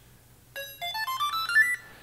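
SteadyMaker SMG Evo handheld gimbal stabilizer playing its power-on tones as it switches on: a quick run of short beeps climbing in pitch, starting about half a second in and lasting just over a second.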